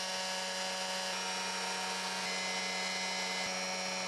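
Electric drill spinning an Eaton Roots-type supercharger at a steady speed to blow air through an intake manifold for a flow test. It gives a steady hum with a thin whine of several high tones over it.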